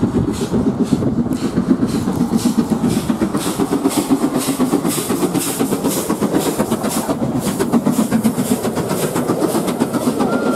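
LMS Princess Coronation Class steam locomotive 6233 Duchess of Sutherland, a four-cylinder Pacific, running through at speed with a fast, even beat of exhaust. It passes underneath, and its train of coaches follows with the clatter of wheels on rail joints.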